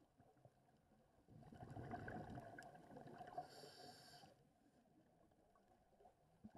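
Faint scuba breathing underwater: a stretch of bubbling rumble from a diver's regulator exhaust, ending in a short high hiss, for about three seconds in the middle.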